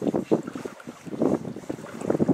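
Wind buffeting the microphone in irregular gusts, over the noise of river water.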